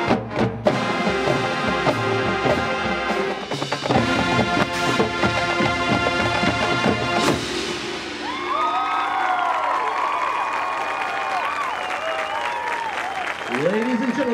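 High school marching band's brass and percussion playing the final bars of its show, with a brief break about half a second in, then cutting off on a sharp final hit about seven seconds in. The crowd then cheers and applauds.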